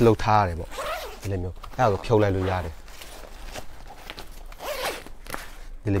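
The zipper on an Osprey Farpoint travel backpack is run along the pack for a couple of seconds in the second half, as the detachable daypack is taken off. A man's voice is heard before it.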